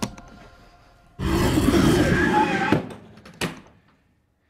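Film sound effects around a leather suitcase: a sharp latch-like click, then about a second and a half of loud rattling, rushing noise with a squealing cry in it, ending in a sharp knock.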